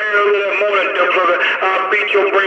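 A man's voice coming over a CB radio, thin and narrow-band, with the words too garbled to make out.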